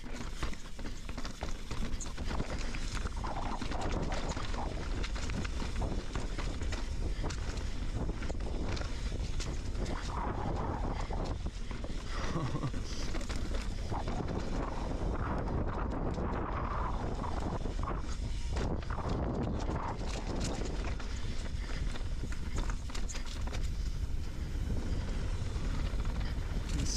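Mountain bike rolling fast down a rocky dirt trail, heard from a chin-mounted action camera: tyres rumbling over dirt and rock with a constant clatter of small knocks and rattles from the bike, and wind rumbling on the microphone.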